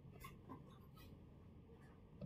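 Near silence with faint taps and scratches of a stylus pen writing on a digital screen, two brief ticks standing out.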